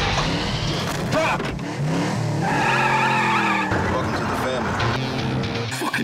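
A car engine revving while the tyres squeal for about a second in the middle, mixed with music.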